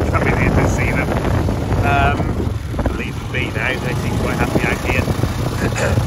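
Wind buffeting the microphone in a steady low rumble, with short high-pitched calls over it and one longer, wavering call about two seconds in.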